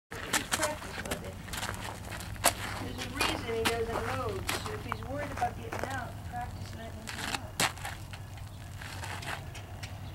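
A woman's voice speaking softly and indistinctly for a few seconds in the middle, among scattered sharp clicks and knocks, over a steady low hum.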